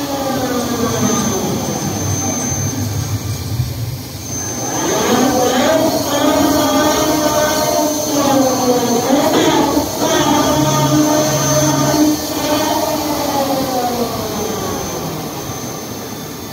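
Top Spin thrill ride's drive machinery whining as the arms swing the gondola, its pitch rising and falling with the ride's speed. It dips briefly about four seconds in, rises again, and fades near the end, with a thin steady high tone over it.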